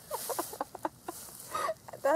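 A person laughing in a run of short, quick bursts that fade out about a second in, followed by a brief breath.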